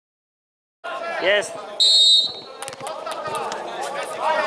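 After a brief silence, the sound of an indoor five-a-side football game cuts in: players shouting, the ball being kicked with sharp thuds, and a short high-pitched whistle about two seconds in, all echoing under an air-dome hall.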